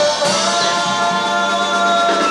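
A live funk band holding a sustained chord while a woman sings a long held note, with no drum beat under it.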